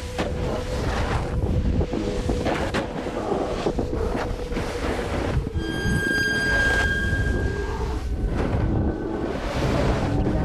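Wind rushing over an action camera's microphone and a snowboard scraping over snow on a fast descent, with music underneath. A cluster of held high tones comes in about five and a half seconds in and stops a second and a half later.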